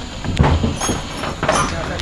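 A long wooden plank knocking and scraping against the wooden deck boards and frame as it is handled, a few sharp knocks over a low rumble.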